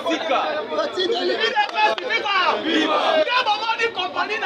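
A man speaking animatedly to a crowd, with several other voices chattering over him.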